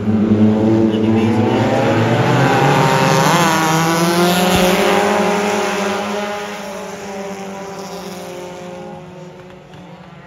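A pack of mini stock race cars on a dirt oval, several four-cylinder engines running hard and overlapping as the field passes. Loud over the first five seconds, then fading as the cars move away.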